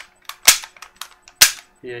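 M945 airsoft pistol's hammer and trigger being worked without firing, giving sharp mechanical clicks. Two loud ones come about half a second and a second and a half in, with fainter clicks between.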